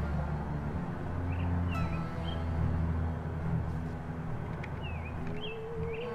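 Soft background music of low held chords that change about a second in, with a few short bird chirps over it.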